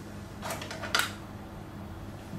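Metal surgical instruments handled on a lab bench: a short rustle about half a second in and a single sharp click about a second in, over a steady low hum.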